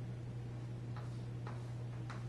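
Chalk tapping and ticking against a chalkboard as a diagram is drawn: two short ticks about half a second apart, over a steady low hum.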